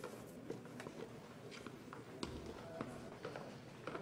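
Faint, irregular footsteps and light taps over quiet room tone.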